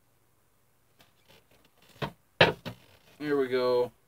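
A man drinking from a small carton: faint clicks, a sharp noise about two seconds in and a louder one just after, then a short vocal sound from him near the end.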